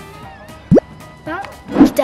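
Background music with a short, loud rising 'bloop' sound effect about three-quarters of a second in, then a brief voice and a quick rush of noise near the end.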